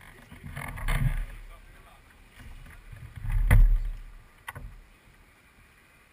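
Wind buffeting the microphone in irregular low rumbling gusts, with a sharp click about three and a half seconds in and a fainter one about a second later.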